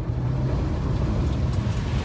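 Mahindra Thar driving through a flooded muddy puddle, with water splashing loudly over the bonnet and windshield and the engine running under load. The noise starts suddenly and stays loud.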